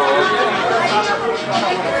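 Several voices talking over one another, children among them: lively overlapping chatter.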